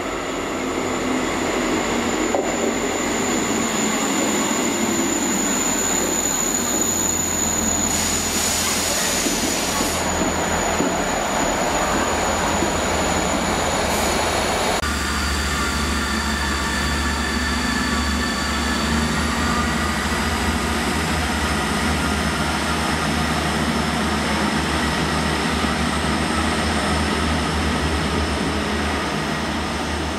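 South West Trains diesel multiple unit running in with a steady high-pitched squeal from wheels or brakes and a burst of hiss about eight seconds in. About fifteen seconds in the sound changes abruptly to the low drone of its diesel engines, with a whine that rises as it pulls away.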